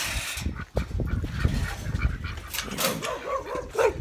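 A dog barking a few short times in the second half, alert barks at someone passing, with wind rumbling on the microphone.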